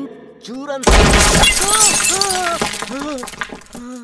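Glass shattering with a sudden loud crash about a second in, the noise of the breaking dying away over a second or so, while a man cries out in short repeated exclamations.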